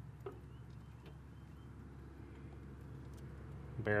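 A hydraulic floor jack being let down under a mini truck's rear suspension: a faint click and creak about a quarter second in and another faint click about a second in, over a low steady hum.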